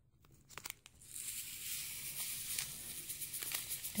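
Small plastic packet crinkling and hissing as green crystal-kit granules are poured from it into a glass bowl of water; a few handling clicks in the first second, then a steady crackly hiss from about a second in.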